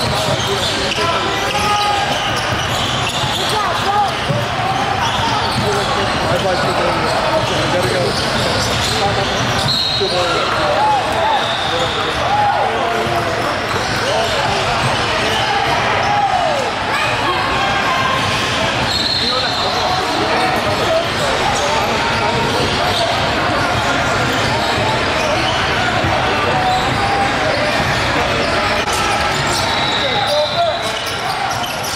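Indoor basketball game sound: a basketball bouncing on the hardwood court amid a steady chatter of crowd and player voices echoing in a large gym.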